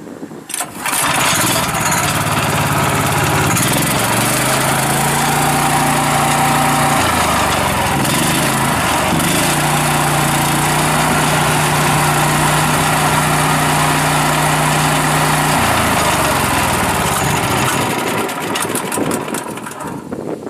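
Vermeer SC130 stump grinder's 13 hp Honda single-cylinder engine starting about a second in, then running with the cutter wheel spinning free. It runs at a higher speed from about nine seconds to about sixteen seconds, then drops back and winds down near the end. It runs cleanly, with no smoke noise or blow-by.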